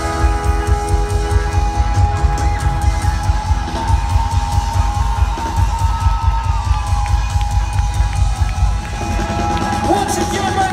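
Live band music played loud through a concert sound system, with a heavy pulsing bass and long held notes, as heard from within a crowd that is cheering.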